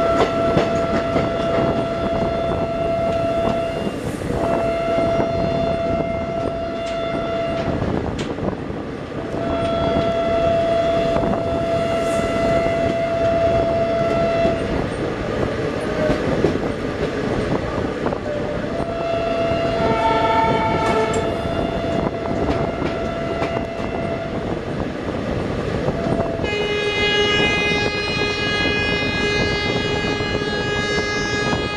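Electric locomotive horns sounding in long, repeated blasts over the steady running noise and wheel clatter of two express trains passing side by side on parallel tracks. Near the end a second horn on a lower pitch takes over and is held in one long blast.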